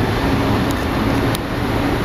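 Steady low rumble of vehicle noise with a continuous noisy din underneath.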